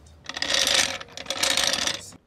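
Daytona 2-ton floor jack being rolled by its handle over rough cement, its metal wheels and casters rattling and grinding across the surface in two pushes of about a second each, with a brief dip between.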